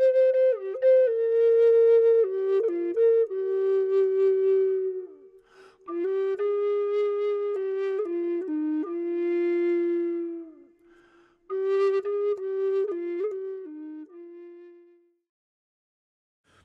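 Low C minor Native American flute playing a slow, unaccompanied melody in three phrases, with short breaths between them. The last phrase ends on a held low note.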